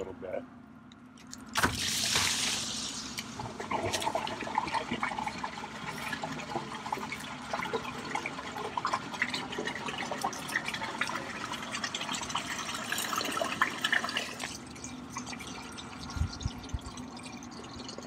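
Gray water released from an RV's gray tank rushing out through a corrugated sewer hose, starting suddenly about two seconds in and then running steadily, flushing the black-tank waste out of the hose; the flow eases near the end.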